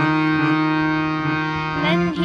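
Harmonium playing held, reedy notes with a drone beneath, the melody stepping to a new note a few times. A young girl's singing voice comes in near the end.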